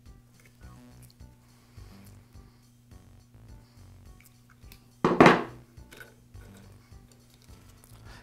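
Hand crimping tool working a crimp connector onto wires: faint metal clicks and handling, then one loud, sharp metallic clack about five seconds in.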